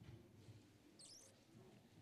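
Near silence: faint low murmur of a hall full of people moving about, with one brief high squeak about a second in.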